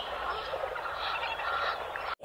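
Steady outdoor background hiss with faint bird calls.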